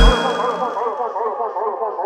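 Dub mix drop: the bass and drums cut out at once, leaving an echo-delay tail ringing on alone. The tail is a warbling, metallic repeat that comes around several times a second and slowly fades.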